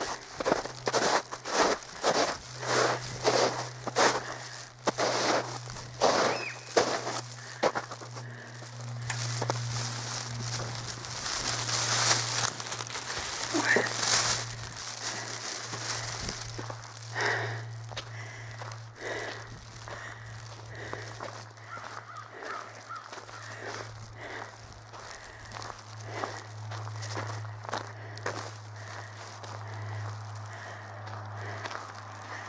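Footsteps crunching on a gravel road shoulder at about two steps a second over a steady low hum. Midway a louder rushing noise swells and fades.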